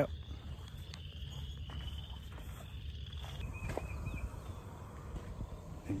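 Quiet outdoor ambience: a steady low rumble of wind on the microphone, with a faint, steady high-pitched insect-like buzz through the first half.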